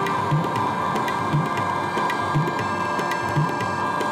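Ambient electronic music played live on synthesizer keyboards: a soft low beat about once a second under a steady sustained pad, with light ticking percussion on top.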